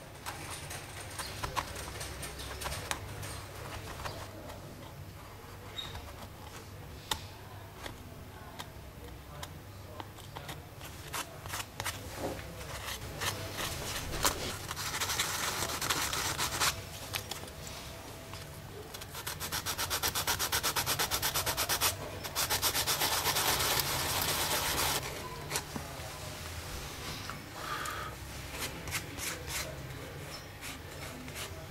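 Hand tool working small wooden patches and cleats inside an old violin's top: light chisel clicks and scrapes at first, then three bursts of rapid back-and-forth rubbing strokes on the wood, the last two loudest, in the second half.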